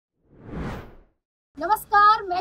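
A whoosh sound effect: one noise swell that rises and fades within about a second.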